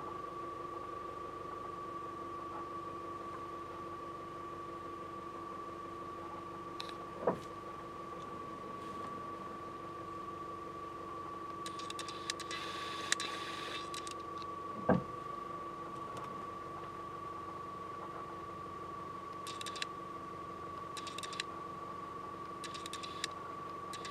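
Steady machine hum with a constant high whine throughout, broken by two single soft knocks about seven and fifteen seconds in and a few brief hissy rustles.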